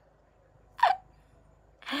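A woman's single short excited vocal yelp about a second in, falling in pitch, with silence around it; a sharp breath near the end leads into speech.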